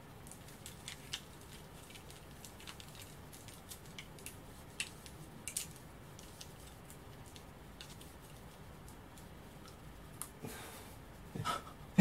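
Faint, irregular clicks and taps of wooden clothes pegs being handled, pinched open and clipped on, with quiet room tone between.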